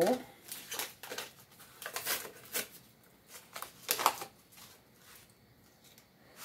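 Foil seasoning-mix packets crinkling and rustling in short, irregular bursts as they are handled and shaken out, emptying dry marinade mix into a bowl.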